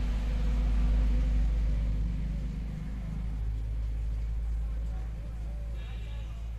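Low engine rumble of a motor vehicle going past, loudest about a second in and then fading away.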